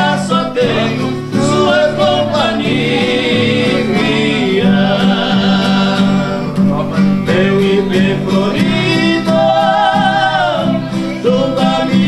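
Two men singing a Brazilian sertanejo song in two-part harmony, with long held notes that waver, over two strummed acoustic guitars.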